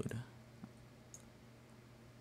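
Two faint computer mouse clicks, about half a second apart, over a steady low electrical hum.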